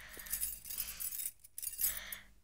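Faint light metallic jingling with a soft rustle, as of small metal trinkets shaken by movement.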